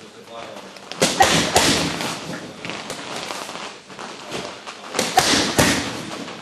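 Boxing gloves punching a hanging heavy bag in two quick combinations of several hard strikes each, about a second in and again about five seconds in.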